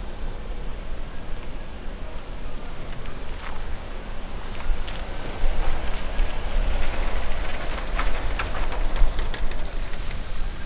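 Wind buffeting the microphone with a steady low rumble. About halfway through, a Chevrolet Silverado pickup drives past close by and the sound grows louder, with a few sharp clicks.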